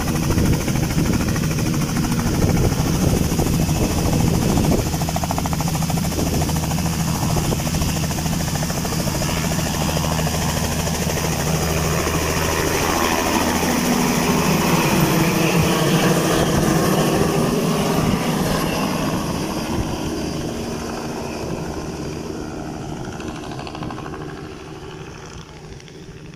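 Light helicopter's rotor and engine running loud and steady, then passing overhead about halfway through with a sweeping change in pitch. The sound then fades away over the last several seconds.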